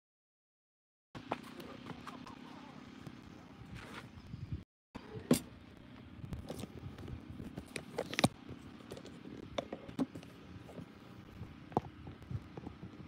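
Handling noise from a handheld phone being carried and moved about: a steady low rushing noise with scattered knocks and clicks, the sharpest about five and eight seconds in. The sound cuts out completely for the first second and again briefly near the middle, typical of a live stream dropping its connection.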